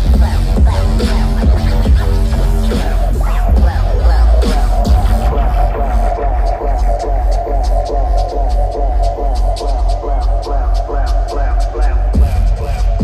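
Loud electronic bass music from a DJ set, played over a concert PA and picked up by a phone in the crowd, with deep sub-bass throughout. About halfway through, a held synth tone and a quick, even ticking rhythm in the highs come in.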